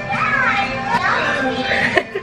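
A small child's high voice chattering and squealing, played back from an old home video of the girl when she was little.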